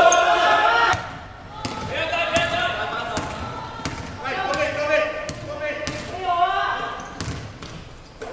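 Basketball bouncing on a hardwood court as it is dribbled, sharp irregular thuds, with players' voices calling out in the large hall.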